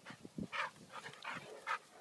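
Two dogs wrestling in play, with a few short dog vocal sounds spread through the two seconds.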